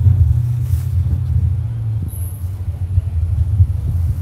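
Small 150 cc motorcycle being ridden through town streets: a steady low rumble of engine and riding noise.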